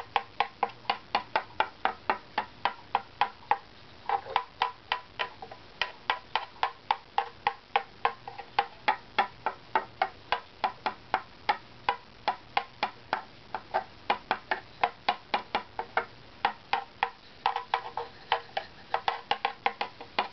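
Rapid light taps with a small stick along a strip of a carved wooden violin back plate, about four a second with a brief pause a few seconds in, each giving a short ringing tap tone. This is tap-tuning of the plate's graduation: the tone holds even along most of the strip and goes up in pitch toward the end where the plate rises, marking where wood is to be scraped.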